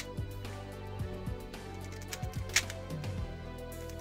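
Quiet background music with sustained tones. A few short clicks, the sharpest a little past halfway, from the layers of a magnetic 3x3 speed cube being turned.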